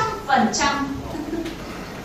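A woman's voice speaking a short phrase in the first second, then a lull with only faint room tone.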